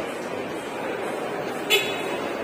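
A kiddie train ride's horn gives one short, high toot near the end, over the steady background hubbub of a shopping mall.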